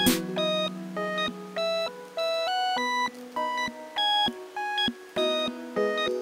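Background instrumental music: a light electronic melody of short held notes stepping up and down.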